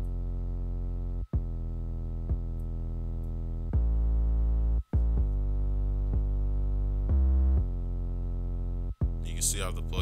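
Synth bass line of an electronic beat playing back from FL Studio: long held low notes, with short silent gaps about a second in, near five seconds and near nine seconds.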